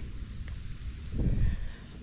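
Wind buffeting the microphone outdoors on open water, a low rumble, with a faint brief sound rising out of it a little past a second in.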